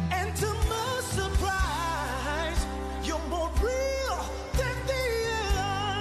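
Song with a solo singing voice, its melody wavering with vibrato, over sustained bass and a steady drum beat.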